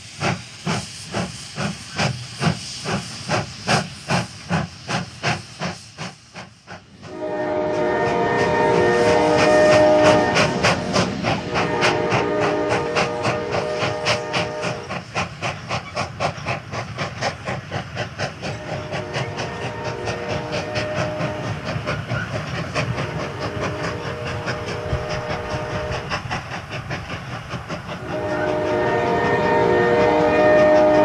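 Steam locomotive sound effect. It opens with a steady chuffing of about two strokes a second, and from about seven seconds in a several-note steam whistle sounds repeatedly over continuing rhythmic chuffing and clickety-clack.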